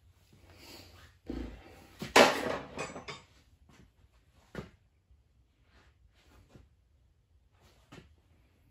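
Metal tools being handled and set down: a dull knock, then a loud metallic clatter about two seconds in, followed by a sharp click and a few lighter clicks.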